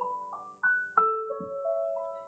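Piano music: a slow melody of single struck notes, about five of them, each left to ring over a held chord.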